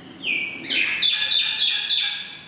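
Whiteboard marker squeaking on the board as a word is written: a quick run of short, high squeaks that starts about a quarter second in and grows louder in the second half.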